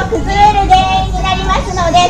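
An announcer's voice over a public-address system giving spoken instructions, with a steady low rumble underneath.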